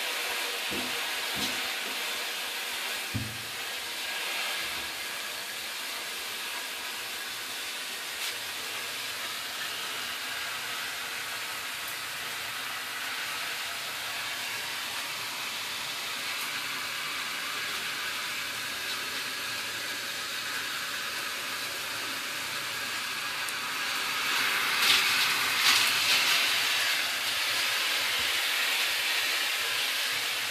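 Shower running inside a shower enclosure: a steady hiss of water spray, growing louder and brighter for a few seconds about 25 seconds in.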